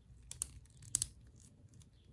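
A few small plastic clicks as the head of a Revoltech action figure is turned on its neck joint: two close together about a third of a second in and another about a second in, with faint handling of the figure between them.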